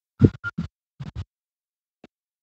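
Handling noise on a phone's microphone as it is moved: a few short scratchy rubs with a low rumble, in two quick clusters about half a second apart.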